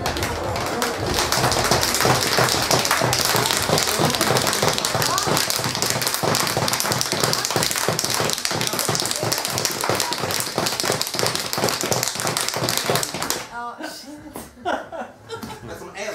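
Dense clapping and applause mixed with laughter and voices, which stops abruptly a couple of seconds before the end; only quieter scattered sounds and voices follow.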